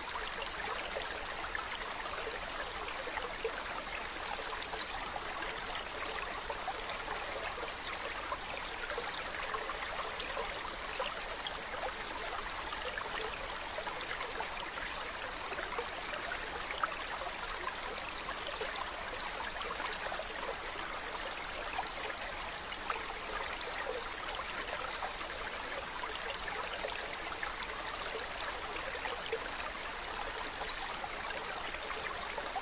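Shallow rocky stream running steadily, water trickling and splashing over stones, with a few brief faint knocks or splashes.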